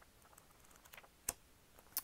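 Near silence with one short, sharp click about a second and a quarter in and a couple of fainter ticks: handling noise from a notebook and its cover being picked up on the desk.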